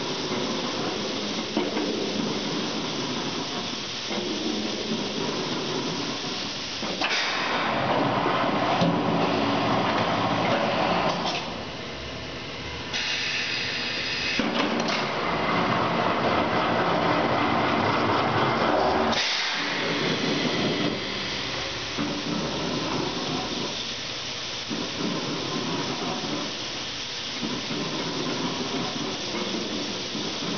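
Richmond Machine barrel dedenter running its repair cycle: a steady hiss of compressed air going into the barrel, mixed with machine running noise. The sound shifts in stages several times and is loudest between about 7 and 19 seconds in.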